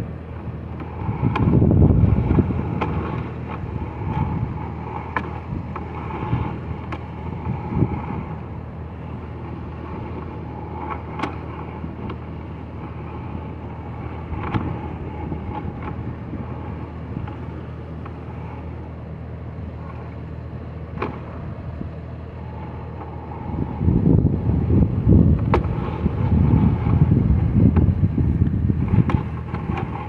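A steady engine-like hum runs throughout, with scattered sharp clicks. Louder low rumbling comes briefly near the start and again for several seconds from about three-quarters of the way through.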